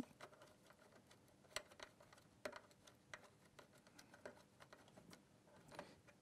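Near silence broken by a handful of faint, irregular clicks: a screwdriver tightening the screw that fixes a power control module to an inverter's metal chassis.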